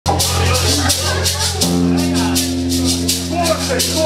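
A live rock band's amplified instruments hold sustained low notes that change about one and a half seconds in, under a quick steady rhythm of high, hissing strokes. A man's voice talks over the playing.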